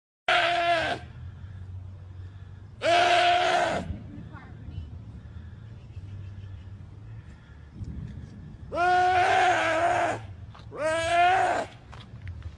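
A deer bleating in distress while a bear holds it down: four loud, drawn-out cries, two close together near the start and two in the last few seconds.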